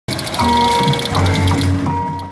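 Music from a passing street parade: a fast, even rattling with several held notes sounding over it.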